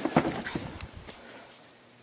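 Footsteps and light knocks on a concrete shop floor: several sharp steps in the first second that fade out toward the end.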